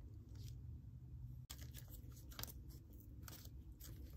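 Faint handling noises: a few soft clicks and crackles from hands working a lump of modeling clay, over a low steady hum.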